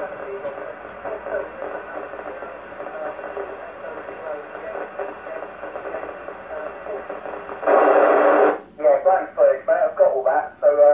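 Weak voice received over an amateur radio transceiver's speaker, band-limited and buried in hiss. About three-quarters of the way in comes a loud burst of static lasting under a second, then a clearer voice starts near the end.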